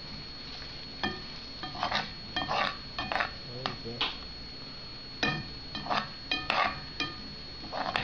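A spoon stirring chopped vegetables in a bowl, scraping and clinking against the bowl over and over, with short ringing clicks.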